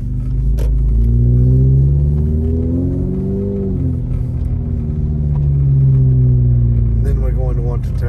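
Car engine and drivetrain heard from inside the cabin while driving on a snowy road: a steady low rumble whose pitch rises and falls twice as the car speeds up and eases off.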